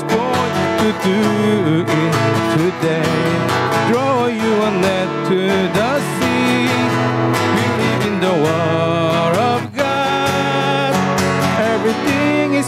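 A man singing a worship song into a microphone, accompanied by strummed acoustic guitar. The music runs without a break except for a brief dip a little before the end.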